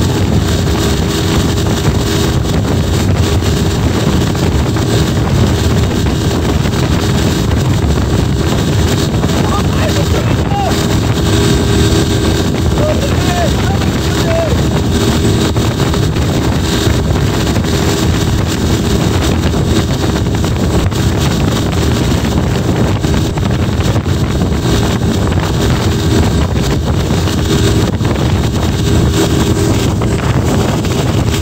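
Tow boat's engine running steadily at speed, a constant hum under heavy wind buffeting on the microphone and the rush of the wake.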